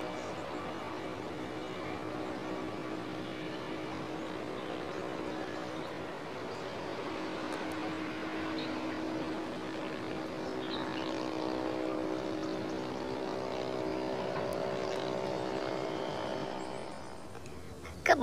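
A distant engine droning steadily, growing louder after about six seconds and fading away near the end.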